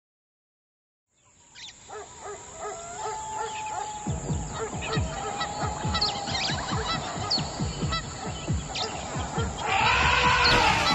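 A song's intro: a jungle soundscape of animal and bird-like calls over many short, low falling sounds. It fades in from silence about a second and a half in and grows steadily louder.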